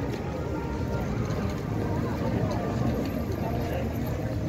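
Crowd of people talking at once outdoors, a steady mix of many voices with no single speaker standing out.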